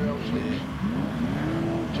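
Autograss race cars' engines revving hard as they accelerate along the dirt track. The engine note climbs, dips about half a second in, then climbs steadily again for about a second.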